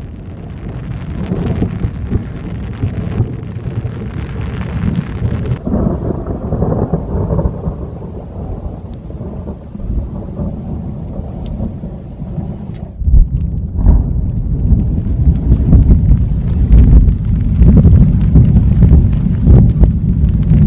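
Thunderstorm: continuous low rolling thunder, with a hiss of rain over it for the first few seconds. About 13 seconds in, a louder, deeper rumble sets in and continues.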